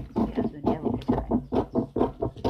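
A person talking rapidly without pause, over a steady low hum.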